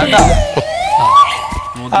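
An edited-in sound effect: a tone that glides upward and then holds for about half a second, with falling sweeps above it, following a last beat of background music.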